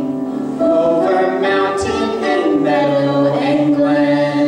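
A male and a female voice singing a duet in harmony, holding long notes, with the higher voice moving to a new pitch about half a second in.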